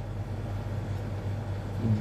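Steady low room hum with a faint even hiss, and no distinct events standing out.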